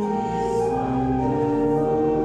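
Slow hymn music: held chords that move to new notes every half second or so.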